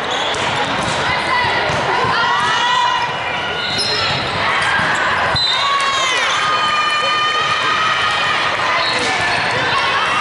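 Sneakers squeaking on a hardwood court and volleyballs being struck during a rally, with a sharp hit about five seconds in, over a steady din of voices echoing in a large hall where several matches are being played.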